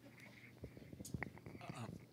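Faint speech from someone away from the microphone, over a low steady hum.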